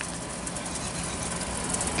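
Window air conditioner running, a steady hum over a rush of fan noise.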